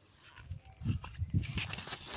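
Irregular soft thumps and rustles of footsteps and phone handling as the camera moves across the lawn onto gravel, growing louder from about half a second in.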